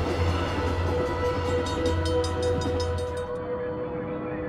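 A train rumbling past with a quick run of wheel clicks on the rail joints in the middle, the rumble stopping shortly before the end, under a sustained music chord.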